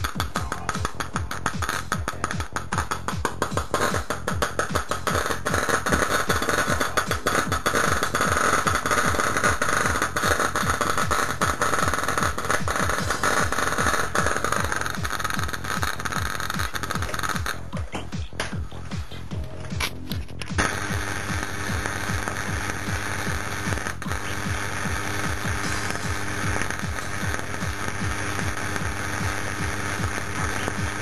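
High-voltage arc between ferrocerium (lighter-flint) electrodes in a sodium carbonate electrolyte, crackling and sizzling continuously over a steady low buzz. Between about eighteen and twenty seconds in it falters and briefly cuts out, then carries on with a steadier buzz.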